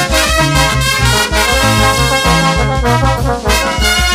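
Brass band playing an instrumental passage, trumpets carrying the melody over a bass line that pulses about four times a second.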